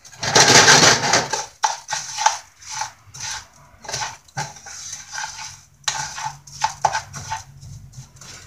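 Wooden spoon stirring and scraping dry rice grains around a nonstick frying pan as they toast in oil, in repeated irregular strokes, the loudest about half a second in.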